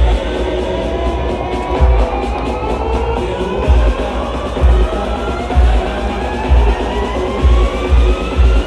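Loud electronic dance music over a big sound system, with heavy bass kicks about once a second and a synth line gliding steadily upward in pitch over the second half, like a build-up riser.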